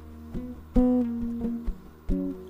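Music: a plucked guitar playing slow single notes that ring on and fade, the loudest struck a little under a second in.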